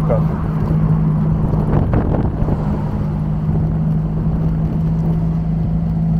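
1953 MG TD Mark II's four-cylinder engine running at a steady speed, a constant low hum heard from inside the open car. A brief rush of louder noise comes about two seconds in.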